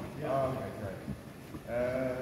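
A person's voice, drawn out and wavering, heard twice: briefly just after the start and again near the end.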